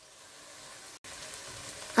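Diced pork and onion-pepper sofrito sizzling steadily in a stainless-steel pot, the white wine boiled off so the meat is frying dry. The sizzle grows slowly louder and has a brief gap about halfway.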